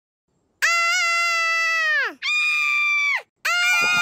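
Three long, high-pitched screams. Each is held on one pitch and slides down as it ends, the first and longest lasting about a second and a half. Music begins under the last one near the end.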